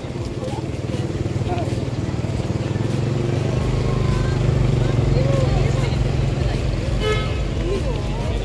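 Low, steady drone of a motor vehicle engine running close by in street traffic, growing a little louder toward the middle, with faint voices in the background.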